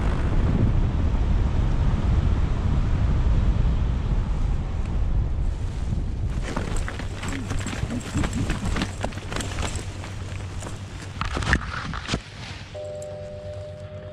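Heavy wind buffeting on the microphone during a fast paramotor landing. It gives way, about halfway through, to a run of scuffs and thuds from the landing run, with one sharp knock near the end. Soft music tones come in just before the end.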